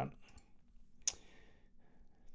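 A few faint, scattered clicks from working at a computer desk, with one louder sharp click and a brief hiss about a second in.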